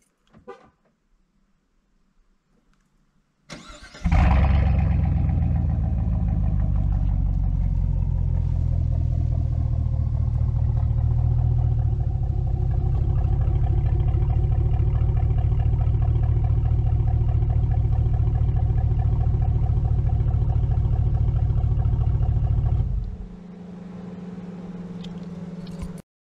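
A warm Chevrolet Silverado V8 with its muffler and exhaust flapper valve deleted starts about four seconds in with a brief flare, then idles steadily through the open exhaust. Near the end the engine note drops away, leaving a quieter steady hum.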